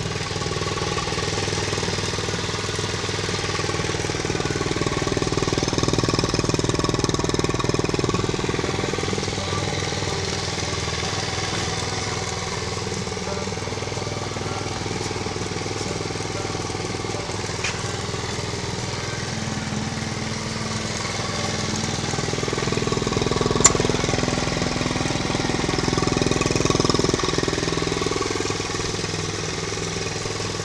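A Honda CT70 Trail 70 mini-bike's small single-cylinder four-stroke engine idling steadily, swelling a little in level twice, with a single sharp click about three-quarters of the way through.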